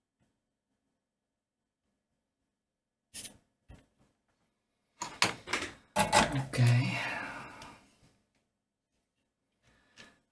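Workbench handling after desoldering: two short clicks about three seconds in, then a clatter of small knocks around five seconds in, as the soldering iron is set aside and the removed capacitor is handled. A spoken 'OK' follows.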